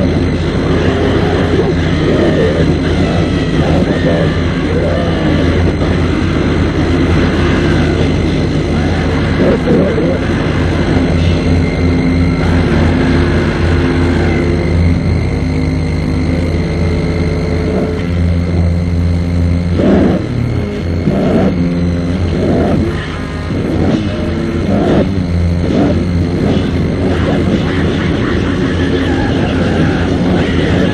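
Lo-fi cassette recording of an extreme-metal (grindcore) band playing: heavily distorted guitars and drums in a dense, noisy wall of sound.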